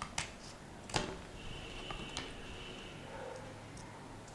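Scissors snipping through white mount board: a few faint sharp clicks of the blades, the clearest about a second in, then quieter cutting.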